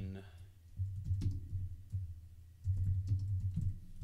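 Typing on a computer keyboard: two short runs of keystrokes, entering a git push command in a terminal.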